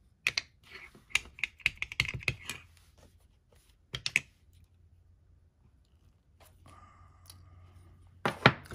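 Rapid plastic clicks and taps from inking a clear acrylic stamp block on a small ink pad in a plastic case and pressing it onto a paper tag. A cluster of taps comes in the first couple of seconds and a few more about four seconds in, then only faint handling.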